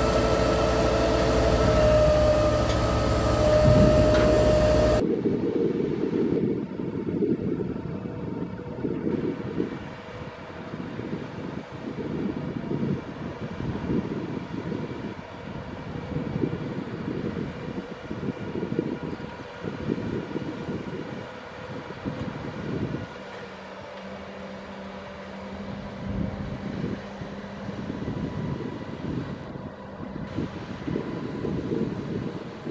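A mobile crane's diesel engine running loudly with a steady whine over it, cut off suddenly about five seconds in. After that, gusty wind rumbles on the microphone, with a faint steady hum beneath.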